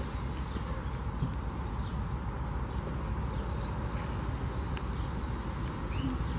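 Microfiber towel rubbing over a car hood, wiping off detail spray: a soft, steady scuffing over a low outdoor background rumble, with a few faint clicks.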